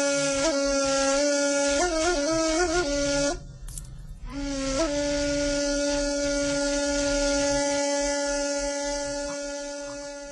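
A ney (end-blown reed flute) playing a slow improvised taksim: a breathy melody with short ornamental turns, then a brief break for breath about three and a half seconds in. After the break comes one long held note that fades toward the end.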